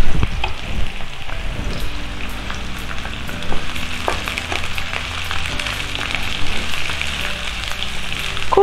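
Sliced onions sizzling and crackling in hot oil in a kadai, stirred with a wooden spatula, with scattered sharp crackles through the steady sizzle.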